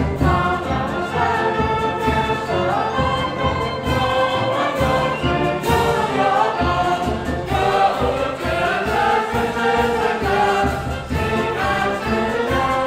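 A school song performed by a concert band of brass, woodwinds and percussion, with a choir of students singing along.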